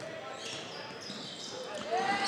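Faint gymnasium game ambience during a basketball game: low crowd noise with a few thin, high squeaks.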